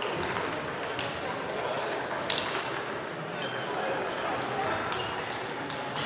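Table tennis balls clicking off bats and tables at several tables at once, with a murmur of voices and a few short high squeaks in a large sports hall.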